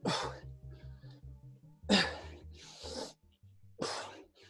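Heavy, forceful breaths blown close to a microphone, about four in the span, from someone straining through push-ups. Behind them plays workout music with a fast pulsing bass.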